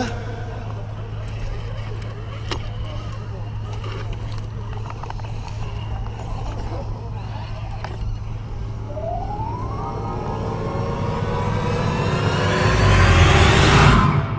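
Background chatter of people talking at an outdoor gathering over a steady low hum, with faint scattered clicks. A short rising whine about nine seconds in, then a whoosh that sweeps upward and grows louder over the last two seconds.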